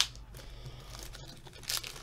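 Plastic trading-card pack wrapper being handled and torn open by hand, faint crinkling with a sharp click at the start and louder crackles near the end.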